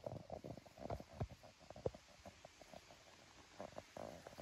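Faint, irregular rustling and crunching of dry tall grass, with soft thumps, as someone walks through it.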